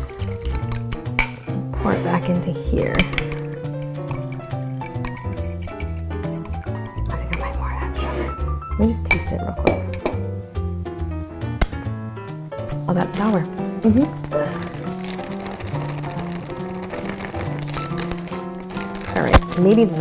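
Background music, with a utensil repeatedly clinking against a glass bowl as a lemon and confectioner's sugar glaze is stirred.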